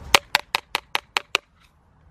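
Seven quick, evenly spaced light taps, about five a second, stopping about a second and a half in.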